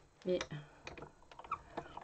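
Stampin' Up die-cutting and embossing machine being cranked, the stacked cutting plates with the magnetic plate rolling through the rollers, with a string of light clicks, about five in the second half.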